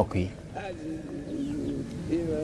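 Dove cooing: a low, wavering coo lasting over a second.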